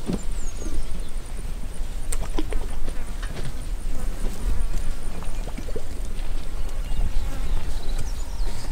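An elephant herd feeding at close range: scattered soft snaps and rustles of vegetation over a steady low rumble.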